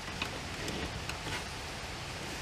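Faint steady background hiss with a few soft clicks from a plastic squeeze bottle of barbecue sauce being squeezed over a skinned raccoon carcass.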